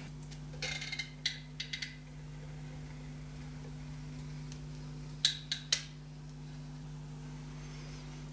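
Caulking gun squeezing out a bead of construction adhesive: a few short clicks and rustles in the first two seconds, then three sharp clicks of the trigger a little after five seconds, over a steady low hum.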